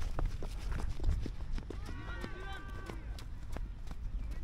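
Running footsteps on the ground, a quick run of irregular short thuds, with a distant drawn-out shout from about two to three seconds in.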